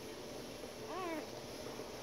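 A newborn puppy gives one short, thin squeak that rises and falls in pitch, about a second in, while nursing.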